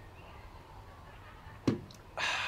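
A ceramic coffee mug set down on a garden table: one short, sharp knock near the end, over a faint background.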